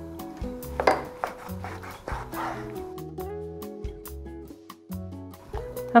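Background music over a kitchen knife cutting raw chicken breast on a wooden cutting board, the blade knocking the board in many short, sharp clicks.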